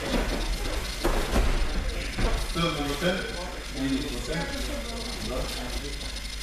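Sparring on judo tatami: bare feet shuffling, judogi cloth rustling and scattered soft thumps of bodies on the mats, with low rumbling. Indistinct talk comes in briefly near the middle.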